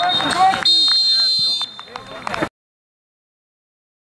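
Referee's whistle signalling half-time: a brief blast, then a long, high, steady blast of about a second, over players' voices.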